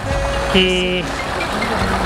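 An engine idling with a steady low rumble, with music playing over it: a long held note that shifts to a fuller chord about half a second in and stops after about a second.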